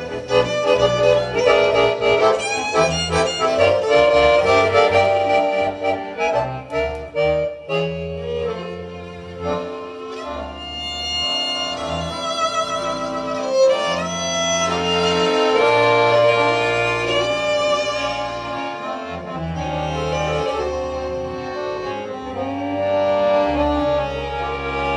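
Violin and piano accordion playing a duet. Over steady accordion bass notes, the first several seconds carry a fast run of short notes, then the violin moves to longer, wavering notes.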